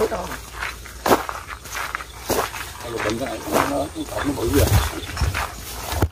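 Footsteps and brushing on an overgrown path, heard as a few sharp knocks about a second apart, with low handling rumble on the microphone near the end and some quiet talk.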